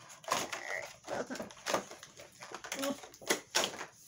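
Clear plastic wrapping crinkling and crackling in irregular bursts as it is handled and pulled off a boxed planner.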